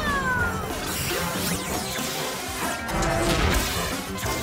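Cartoon soundtrack: action music overlaid with sound effects. Falling whistle-like tones sound at the start, then swishing whooshes and crashing hits as the heroes dash past.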